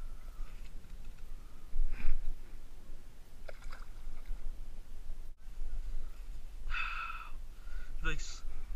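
A bass released into shallow water at the bank, splashing sharply about two seconds in, over a steady low rumble on the camera microphone. Near the end a brief pitched sound follows.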